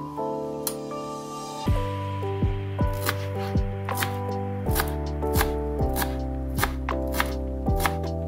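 Knife chopping fresh dill on a plastic cutting board: quick, slightly uneven strikes, about two a second, starting about three seconds in. Background music plays throughout.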